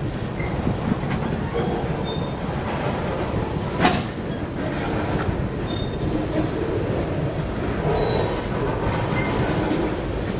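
Freight cars of a slow-moving CSX train rolling past over the crossing: a steady rumble of steel wheels on the rails, with short high squeals from the wheels and one sharp clank about four seconds in.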